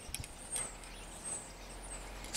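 Faint high bird chirps over quiet background noise, with a few small clicks near the start.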